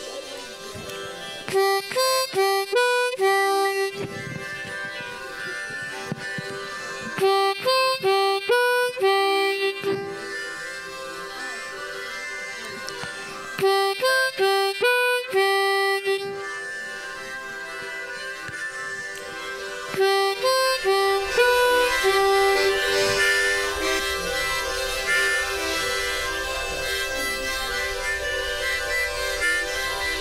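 Diatonic harmonica through a microphone playing the same short lick four times with pauses: blow 3, blow 4, blow 3, draw 3, blow 3, in quick separate notes. Between the phrases, and through the last third, a softer, denser wash of many harmonicas sounds together.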